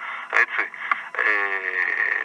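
A man's voice over a telephone line on the radio. There is a brief hesitation "eh", then about halfway in a long, drawn-out filler sound held at a nearly steady pitch.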